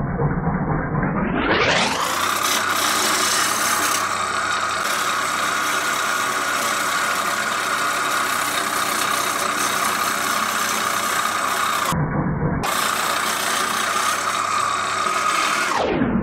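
Jet JWL-1442 wood lathe running while a gouge cuts the spinning yew blank, a steady rasping of the tool on the wood over the lathe's hum. The sound rises in pitch over the first two seconds and drops again at the very end.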